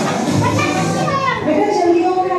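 Young children's voices and chatter over background music.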